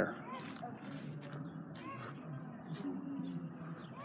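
Faint background chatter of distant voices, with no one close to the microphone.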